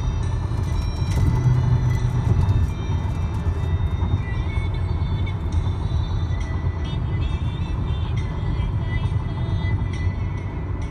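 Car cabin road noise while cruising at freeway speed: a steady low rumble from the tyres and engine, swelling briefly a second or two in. Music plays over it.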